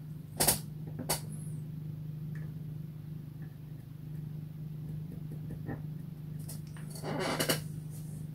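Painting supplies being handled on a desk: two short clicks about half a second and a second in, and a brief rustle near the end, over a steady low hum.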